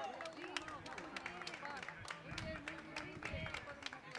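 Several people talking at once, with irregular sharp clicks, a few each second, like shoe steps or scattered claps.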